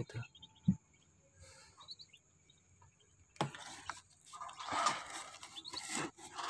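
Faint high peeps of newly hatched Muscovy ducklings. About three and a half seconds in there is a click, followed by rustling.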